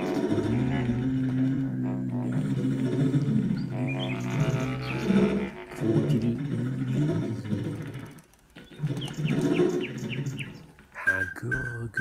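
Bass clarinet playing low, wandering improvised notes, with short runs of high chirping, bird-like figures over it about four seconds and nine seconds in. A steady high tone comes in near the end.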